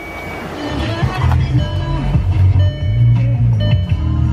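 Car radio playing music from an FM station through the car's speakers, with heavy bass. It grows louder over the first second or so as the volume is turned up.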